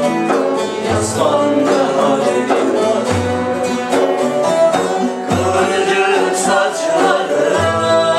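Live Turkish folk-hymn ensemble: bağlama (saz) lutes and a ney reed flute accompanying men singing together, with a low bendir frame-drum stroke about every two seconds.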